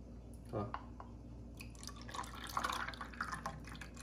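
Creamy chocolate-drink mixture trickling from a plastic funnel into a plastic popsicle mold, a run of small drips and splashes in the second half.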